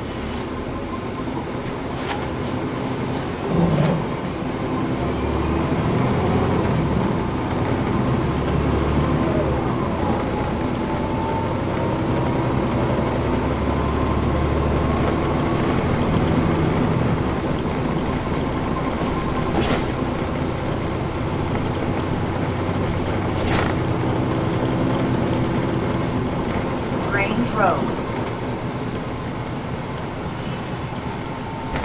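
Inside a 2010 NABI 40-SFW transit bus pulling away from a stop. Its Cummins ISL9 diesel engine pulls under load, and a whine rises in pitch as the bus gathers speed over several seconds. A few sharp rattles or knocks come from the cabin.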